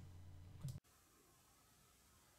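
Near silence: a faint low hum that cuts off suddenly under a second in, with a soft click just before.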